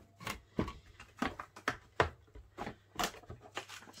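Hand-cranked manual die-cutting machine rolling a sandwich of cutting plates and dies through its rollers, giving a run of short clicks about three a second as the handle turns.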